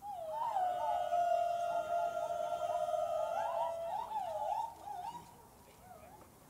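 A high voice holds one long note for about three and a half seconds, then wavers and slides up and down before stopping about five seconds in: a drawn-out vocal call.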